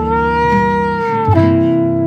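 New Orleans jazz band playing. A lead instrument holds a long note that bends up and then settles, and moves to a new note about two-thirds of the way through, over plucked bass and guitar chords.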